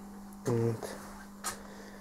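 A man's voice makes a single short syllable, without words, about half a second in. A steady electrical hum runs underneath, and there is a faint click about a second and a half in.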